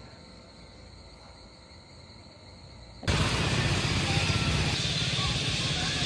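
A faint, steady insect trill, then about three seconds in a sudden change to a loud, dense chorus of parrots (cotorras) chattering en masse at their sunset roost, over the low rumble of street traffic.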